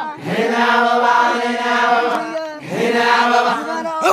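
Voices chanting in long held notes: one sustained phrase of about two and a half seconds, then a second held phrase starting near the end.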